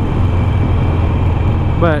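2007 Harley-Davidson Nightster's 1200 cc V-twin running steadily while cruising, a low rumble under wind and road noise.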